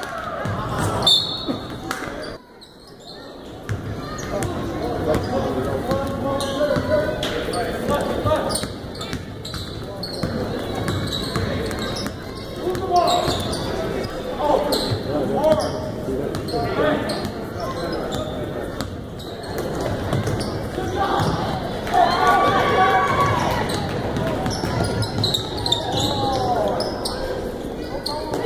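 A basketball being dribbled and bouncing on a hardwood gym floor during play, with people's voices in the echoing hall throughout. The sound dips briefly about two and a half seconds in.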